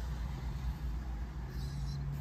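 Steady low hum of a parked car running, with a second low tone joining about one and a half seconds in.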